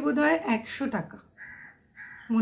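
A woman's voice in the first half, then a crow cawing in the background, two short hoarse calls in the second half.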